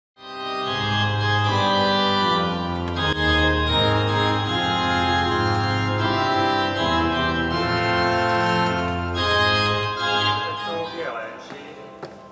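Organ playing slow, held chords over a strong bass, changing chord every second or so and ending about ten and a half seconds in; a man's voice starts speaking near the end.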